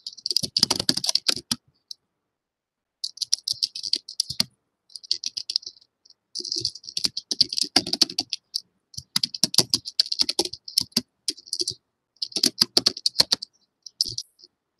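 Computer keyboard typing, heard over a video call's audio: runs of rapid key clicks lasting a second or two each, separated by short pauses, with dead silence in the gaps.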